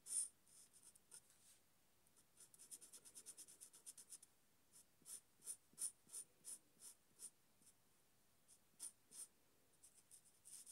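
Faint strokes of a marker pen tip rubbing across drawing paper as an area is coloured in: a quick run of short strokes, then slower single strokes about two a second, a pause, and two more near the end.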